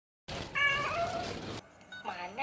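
A domestic cat meowing once, the call dropping in pitch, cut off abruptly about one and a half seconds in.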